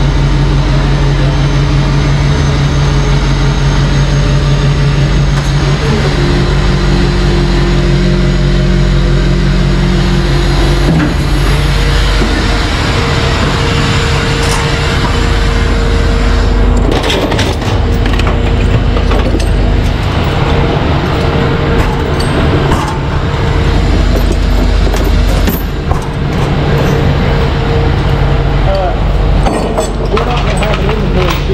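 Rollback tow truck's diesel engine running steadily, echoing in a tunnel, its pitch stepping to new steady levels about six and eleven seconds in. Metal knocks and clinks come in the second half, as tie-down chains on the steel deck are handled.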